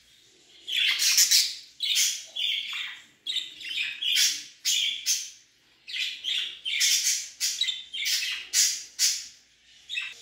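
Budgerigars calling in a cage: a steady run of short, shrill, high-pitched chirping calls, about two a second, with brief gaps between them.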